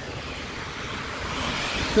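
Tyres of a passing vehicle hissing on wet asphalt, a steady rushing noise that swells toward the end.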